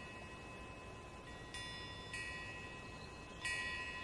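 Faint chime tones like a wind chime, struck three times, about one and a half seconds in, about two seconds in and near the end, each ringing on. A faint steady tone sits beneath them.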